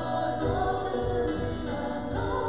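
A church worship team of one man and two women singing a worship song together into microphones, with piano accompaniment and long held notes.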